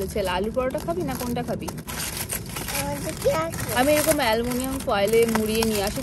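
A woman speaking, with aluminium foil crinkling as a food parcel is unwrapped.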